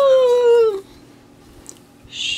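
A small dog whining once: a single drawn-out note that falls in pitch over about a second, then stops.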